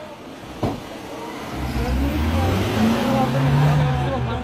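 A van's engine revving up as it pulls away, a low running sound that builds from about a second and a half in and climbs gently in pitch. A single sharp knock comes about half a second in.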